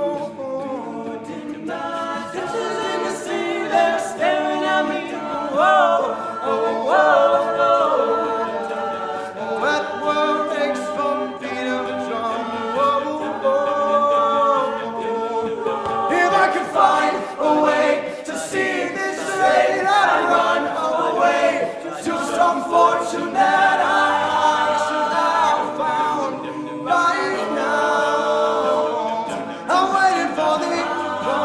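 All-male a cappella group singing in harmony, a lead voice over the backing vocals, with no instruments. The sound grows fuller and louder about halfway through.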